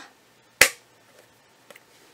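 A single sharp click of hard plastic about half a second in, as a plastic bobbin storage case is handled and put aside, then a faint tick near the end.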